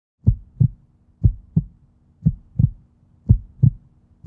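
Heartbeat sound effect: four double thumps, lub-dub, about one a second, over a faint steady low hum.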